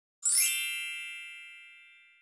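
A bright chime sound effect for a channel logo intro: a quick falling shimmer, then several ringing tones that fade out over about two seconds.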